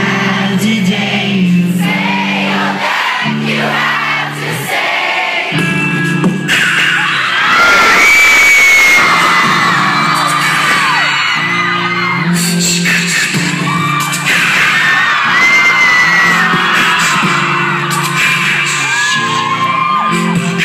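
Rock band playing live through a club PA: electric guitars, bass and drums under a high male lead vocal, recorded from the crowd. About eight seconds in the low instruments drop out briefly while the singer holds a high note, then the band comes back in.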